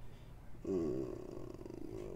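A man's voice making a drawn-out wordless hum, starting just over half a second in and lasting about a second and a half.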